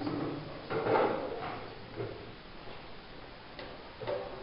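A few knocks and a scraping clatter of classroom desks and chairs being bumped and moved as people get up and walk among them, loudest about a second in, with a shorter knock about a second later.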